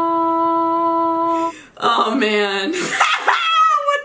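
A woman's voice holding one long, steady sung note that breaks off about a second and a half in. After a brief gap come lively voice sounds with sliding pitch and laughter.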